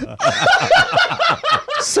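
A man laughing hard, a quick run of laughs, with a word spoken near the end.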